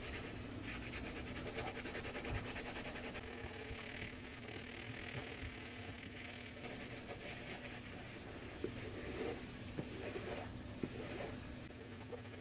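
Sponge-tipped applicator of a liquid shoe cleaner scrubbed back and forth over a synthetic football boot: continuous scratchy rubbing, with a few light knocks in the second half.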